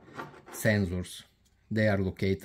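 Speech: a voice talking, with a short pause about halfway through.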